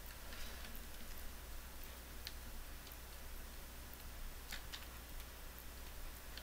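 A few sparse, faint clicks of computer keyboard and mouse, the clearest a quick pair about four and a half seconds in, over a steady low hum and hiss.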